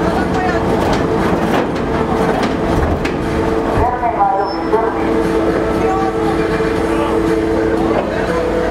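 A ferry's machinery running steadily: a continuous rumble with a steady two-tone hum. Voices call out briefly about four seconds in.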